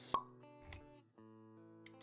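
Intro-animation sound effects over music: a sharp pop right at the start, a soft low thud just under a second in, and held plucked-string notes under them.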